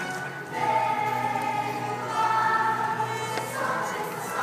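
A group of voices singing together with musical accompaniment, holding long sustained notes from about half a second in.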